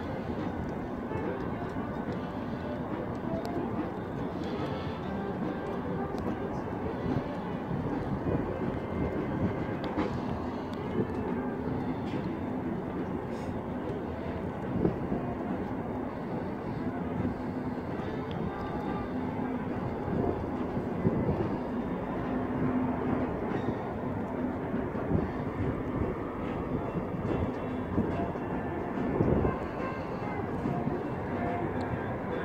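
Diesel-hauled passenger train running along the canyon floor, heard from far above as a steady low engine drone over a continuous rushing noise.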